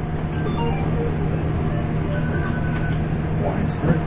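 Steady low rumble and hum of background noise, with faint voices in the background.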